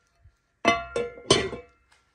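Ceramic-coated non-stick cookware being handled: three ringing clanks of a pan and its lid knocking together in quick succession.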